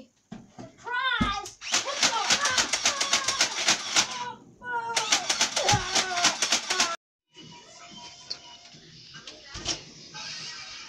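A toy Nerf blaster firing in two long rapid runs of sharp, evenly spaced clicks, about seven a second, with a short break between them, a child's voice sounding over the firing.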